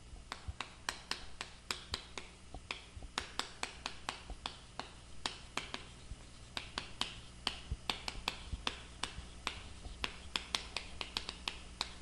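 Chalk writing on a chalkboard: a long, irregular run of sharp taps and short scratches, several a second, as letters are written out stroke by stroke.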